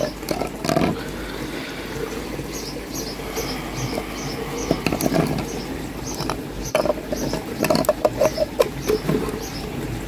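Plastic pond pipe fittings and corrugated flexible hose being handled and pushed together, with scattered clicks, knocks and rustling. Behind it a regular series of short high chirps goes on, about two or three a second.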